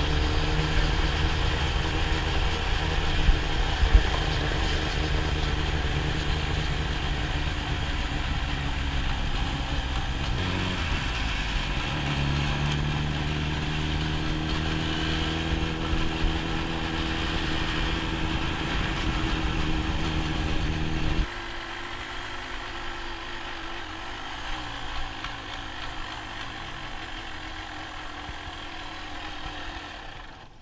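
Yamaha DT 200's two-stroke single-cylinder engine running at a steady pitch while the bike is ridden, with a shift in pitch about eleven seconds in. About two-thirds of the way through the engine sound stops abruptly, leaving a quieter low rumble.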